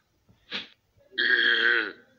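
A voice making a short breathy puff, then a single drawn-out burp lasting under a second, loud and steady in pitch.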